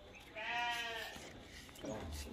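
A Gujri buck goat gives one short bleat about a third of a second in, lasting under a second.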